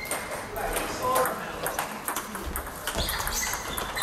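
Table tennis balls clicking off tables and bats from several matches around a busy hall, over a background of players' voices.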